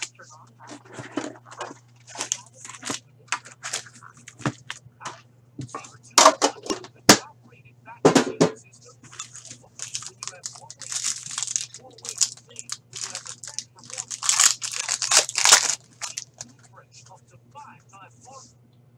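Hockey card packs being torn open and their wrappers crinkled in repeated crackly bursts, with cards handled and shuffled. A steady low hum runs underneath.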